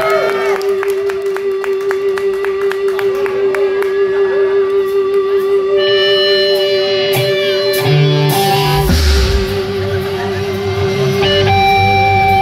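Live rock band opening a song: a single steady held tone with a slight waver runs throughout, with electric guitar notes over it. Drums and bass come in about nine seconds in. Crowd whistles and cheers fade out in the first second.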